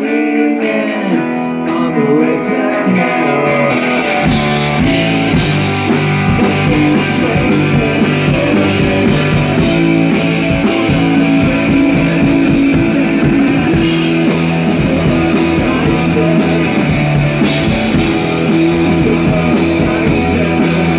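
Live rock band playing an instrumental passage of a song. Electric guitar carries the first few seconds with little low end. About four seconds in, the drums and bass come in and the full band plays on.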